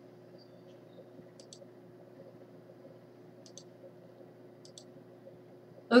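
Faint, sharp clicks in quick pairs, three times, over quiet room noise; a woman's voice begins at the very end.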